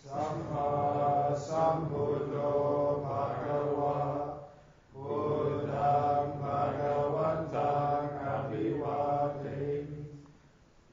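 Theravada Buddhist chanting in Pali, voices intoning in unison on long, steady recitation tones in two long phrases with a short breath pause just before the middle.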